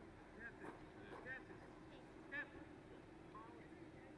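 Near silence: faint outdoor ambience, with a few brief, faint high chirps scattered through it.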